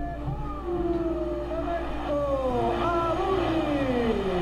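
Old TV broadcast sound of a football goal celebration: stadium crowd noise with long, drawn-out shouts that slide and mostly fall in pitch.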